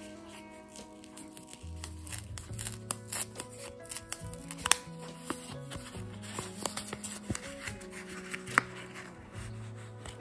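A small paper packet being unfolded and crinkled by hand, with many short sharp crackles, over background music.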